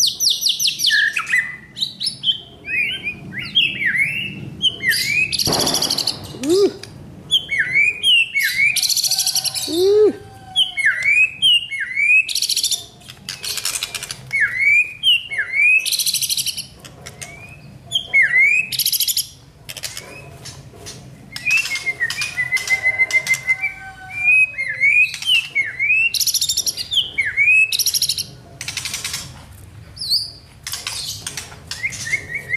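White-rumped shama (murai batu) singing: a busy, varied run of short rising chirps mixed with harsh, scratchy bursts and a few whistled glides, in phrases with brief pauses.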